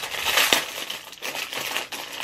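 Thin clear plastic bag crinkling as it is handled, loudest in the first second, with a sharp click about half a second in.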